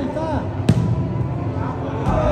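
A soccer ball kicked once on indoor turf, a sharp thud about two-thirds of a second in, with players shouting calls around it.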